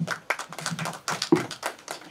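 A few people clapping, a spatter of hand claps at an uneven pace after a speech.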